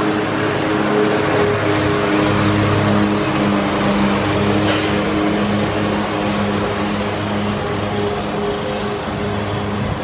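A small engine running steadily at an even speed, its hum wavering slightly in level.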